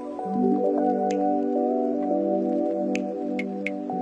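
Calm instrumental music: slow, sustained chords that change shortly after the start, with a few sparse, soft clicks over them.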